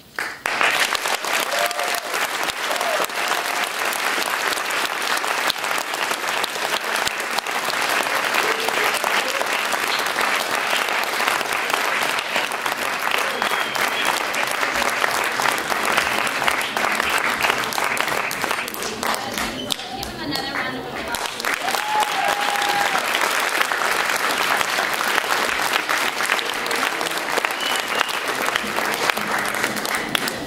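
Audience applauding, with a few voices calling out over the clapping. The applause thins briefly about two-thirds of the way through, then swells again.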